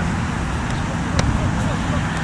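Open-field ambience: a steady low rumble of wind on the microphone, with faint distant voices of players calling and one sharp click about a second in.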